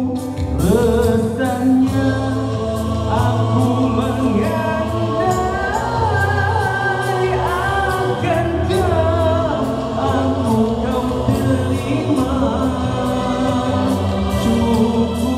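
Male nasyid vocal group singing in harmony through microphones and a sound system, over a steady low bass line and a light beat.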